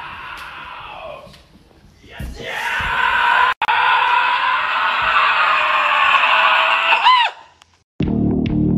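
A person's loud, sustained scream, starting about two seconds in and lasting about five seconds. It breaks off for an instant partway through and ends with a short rising-and-falling squeal.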